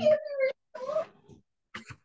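A person's voice making short wordless sounds: two drawn-out, wavering tones in the first second, then a brief sound near the end.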